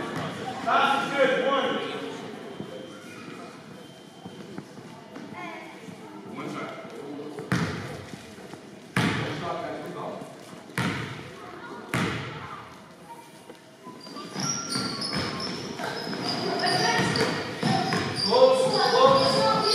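A basketball bounced four times on a hardwood gym floor, each bounce echoing in the hall, about a second and a half apart, as a player readies a free throw. Near the end, sneakers squeak on the court. Voices murmur in the background.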